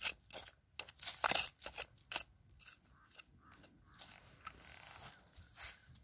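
A metal blade digging and scraping into gravelly soil, grit and small stones crunching against it. It starts with a quick run of sharp scrapes, then turns to softer, sparser scraping after about two seconds.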